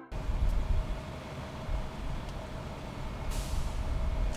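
Low, steady rumble of vehicle engines idling outdoors, with a faint steady hum and a few light clicks. A short hiss comes about three seconds in.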